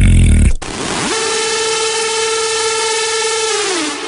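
Synthesized electronic intro effect. A deep, gliding processed sweep cuts off about half a second in. It gives way to a hiss-like wash and a held synthesizer tone that slides up at about a second, stays level, and bends down in pitch near the end.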